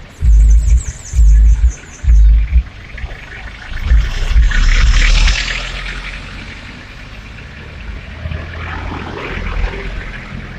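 Road traffic passing close by. In the first couple of seconds there are three loud bursts of bass-heavy music, about a second apart, and a vehicle swells past around four to five seconds in.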